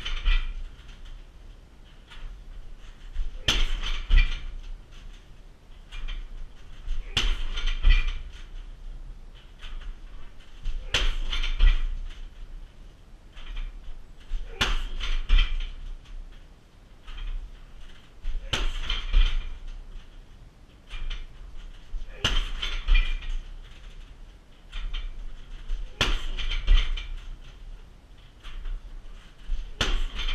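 Shin kicks slamming into a 60 kg heavy bag on a metal freestanding stand, one sharp hit about every four seconds, eight in all. Each hit is followed by about a second of metallic rattling from the bag's chains and stand.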